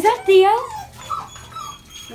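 A dog whining: short rising whimpers at the start, then a few fainter, higher whines.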